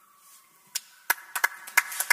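Applause starting after a speaker finishes: a single hand clap about three-quarters of a second in, then several people clapping from about a second in, the claps coming thicker.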